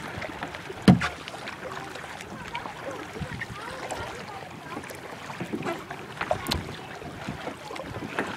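Kayak paddling on a lake: a steady wash of water swishing and dripping from the paddle blades, with scattered knocks. The loudest knock comes about a second in.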